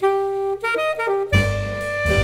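Alto saxophone comes in abruptly with a quick jazz phrase of short, clear notes; about a second in, low double-bass notes join under it as the quartet plays on.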